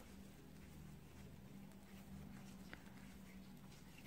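Near silence: a faint steady room hum, with a few light ticks of metal knitting needles, the clearest a little after halfway.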